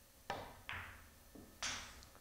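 Pool balls knocking on a pool table: four sharp knocks in under two seconds as the cue ball rebounds off the cushions and the object ball drops into the corner pocket.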